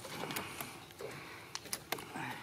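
Handling noise as a plastic fish lip-gripper is clamped onto a small catfish held up on the line: about four sharp clicks, two around half a second in and two near the end.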